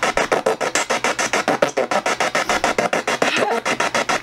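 PSB-7 spirit box sweeping through radio stations and played through a JBL speaker. It makes very loud, choppy static that cuts in and out about ten times a second.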